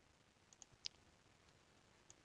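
Near silence with a few faint clicks about half a second in, the last one the loudest: clicks of a computer mouse and keyboard as text is copied and windows are switched.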